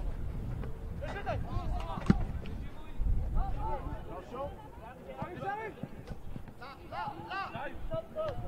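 Players shouting to each other on a football pitch, short scattered calls, with one sharp thud of a football being kicked about two seconds in.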